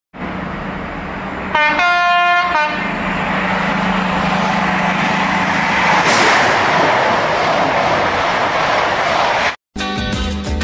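A train horn sounds for about a second over a steady rushing train noise. The rushing swells about six seconds in and cuts off abruptly near the end.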